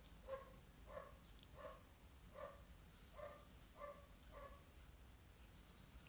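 Near silence, with faint animal calls repeating evenly about one and a half times a second.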